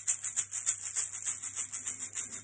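Steady rhythmic hand percussion: crisp, high-pitched strokes at about three a second, keeping an even beat.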